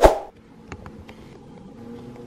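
A single sharp thump right at the start, dying away quickly, then quiet room tone with a few faint clicks and a low steady hum.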